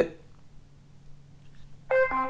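Faint steady low hum, then, right at the end, a Philips WelcomeBell 300 wireless doorbell's speaker unit starts playing its chime melody after the push button is pressed.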